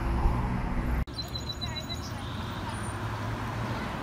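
Road traffic noise with a low rumble at a city street corner. It cuts off abruptly about a second in to a quieter, steady outdoor ambience, with a brief run of high, rapid chirping ticks soon after.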